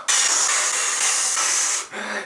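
A steady, loud hiss of static-like noise that cuts in suddenly and stops abruptly after nearly two seconds.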